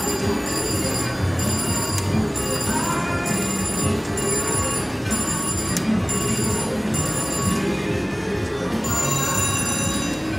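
Slot machines chiming and ringing over the steady din of a casino floor, with high electronic ringing tones that stop and start about once a second as reels spin.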